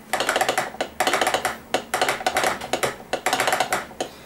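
Morse telegraph key tapped rapidly, clicking in about five quick runs. It is the preliminary call-up signal sent before a radiogram, to put the receiving operator on alert.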